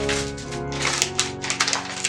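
Sustained background music, its low notes dropping away partway through, over repeated short rustles of paper envelopes and letters being handled.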